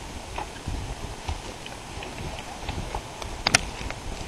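Scattered light knocks and clicks over a low outdoor rumble, the loudest a sharp double click about three and a half seconds in.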